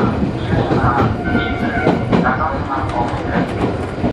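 Electric commuter train of the Iyo Railway Takahama Line running, heard from inside the cab: a steady rumble with a few clicks from the wheels over the track.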